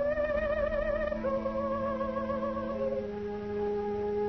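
Orchestral music from an art song: a high melody held in long notes with vibrato steps down twice over sustained low chords.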